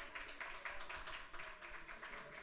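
Faint, scattered applause from a small audience: many light, irregular hand claps.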